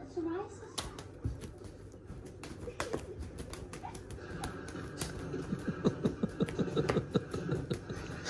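A cat playing with a feather wand toy on a blanket: scattered light taps and rustles, then from about halfway a quick run of short low sounds, about three or four a second, getting louder near the end.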